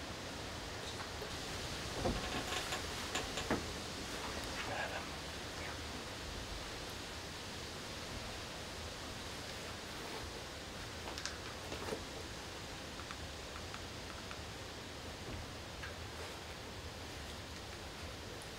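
Steady low hiss of background noise, with a few faint rustles and small clicks scattered through it, most of them a couple of seconds in and again around the middle.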